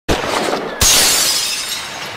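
Shattering sound effect for an animated logo breaking apart: a first crash right at the start, then a louder smash a little under a second in, trailing off in a fading crumble of breaking debris.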